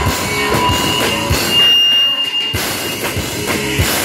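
Live rock band playing an instrumental passage: drum kit and electric guitars, loud and amplified. Around the middle the drums and low end drop out briefly while a single high note is held, then the full band comes back in.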